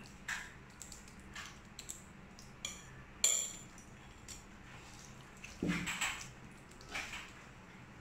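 Quiet, scattered taps and clinks of a steel spoon and a serving bowl as masala is spooned onto a banana leaf, the sharpest clink a little past three seconds in.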